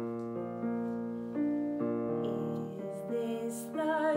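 Digital piano playing slow, sustained chords, with a new chord struck every half second to second.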